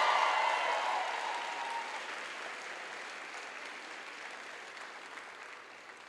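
Audience applauding after a name is announced, with some crowd voices at first, fading away steadily over the few seconds.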